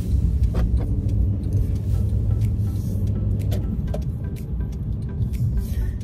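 Car driving, heard inside the cabin: a steady low engine and road rumble, with music playing underneath.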